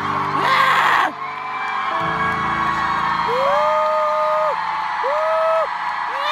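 A person screaming in long, drawn-out wails that sound like crying, each cry swelling and then sagging in pitch, with a shorter second wail. Underneath are arena concert music and a loud burst of crowd screaming about a second in.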